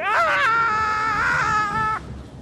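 A person's long, high-pitched scream: the pitch falls at the start, then is held steadily for nearly two seconds before cutting off.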